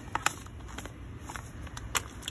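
A plastic resealable pouch being handled: a few short, sharp crinkles and clicks, the loudest just after the start, over a low steady rumble.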